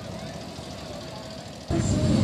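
Motorcycle engines idling at a street gathering, then near the end a much louder motorcycle engine running at high revs sets in suddenly.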